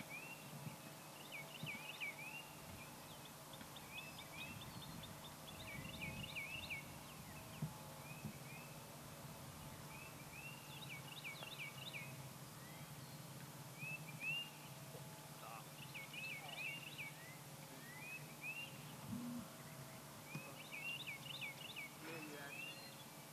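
A songbird singing, repeating short phrases of quick chirps every couple of seconds, faint over a low steady hum.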